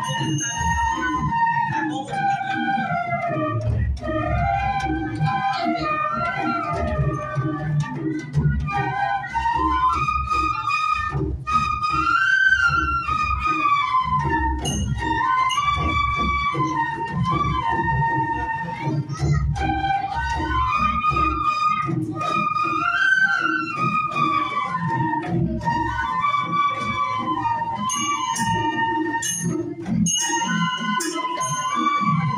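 A group of bamboo bansuri flutes playing a folk melody in unison, the tune rising and falling in phrases that repeat about every ten seconds, with low thumping underneath.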